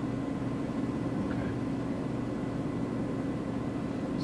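Steady low hum of a fan, made of several level pitched tones under an even hiss: the room tone of the lecture room.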